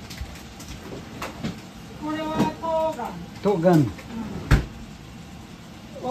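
Two short stretches of a person's voice, then a single sharp knock about four and a half seconds in.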